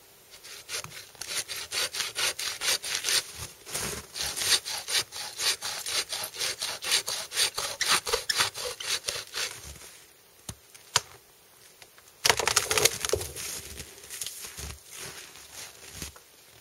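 Hand bow saw cutting into a dead standing tree trunk, a long run of quick even strokes, about four a second. After a pause with a couple of clicks, a louder, rougher burst of sawing about twelve seconds in, then lighter strokes.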